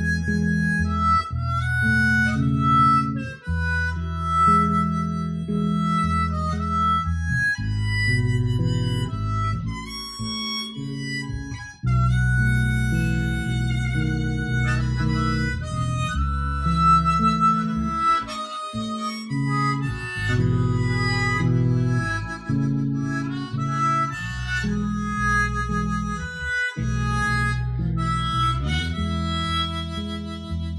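A harmonica, cupped against a microphone, plays a slow melodic solo over a plucked electric bass line. This is an instrumental passage with no singing.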